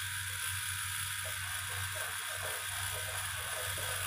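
Brushless outrunner motor spinning without a propeller, driven through its ESC from the transmitter's throttle stick: a steady hiss-like whir with a faint low hum, having just spun up.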